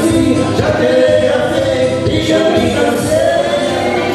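A small band playing live: a man singing into a microphone over electronic keyboard and electric guitar.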